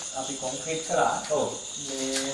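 A steady, high-pitched chorus of crickets, with men's voices talking over it in the middle.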